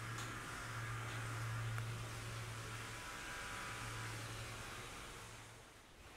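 Faint, steady low hum under a soft hiss, fading out near the end: the room tone of an empty building.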